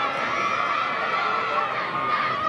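Many spectators' voices shouting and cheering at once, a steady, unbroken wall of overlapping voices with no single voice standing out.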